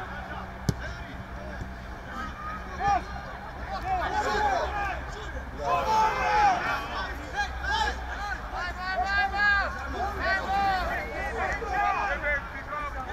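Men shouting and calling out across a football pitch during open play, several voices overlapping, more and more of them toward the end. A single sharp knock comes just under a second in.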